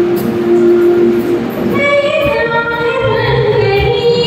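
Instrumental backing music plays, and about two seconds in a woman starts singing over it into a microphone.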